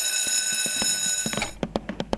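Alarm clock bell ringing steadily, then cutting off about one and a half seconds in, followed by a run of quick, irregular clicks.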